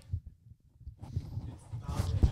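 Handling noise from handheld microphones as they are moved and lowered: a run of soft, irregular low thumps and rustles.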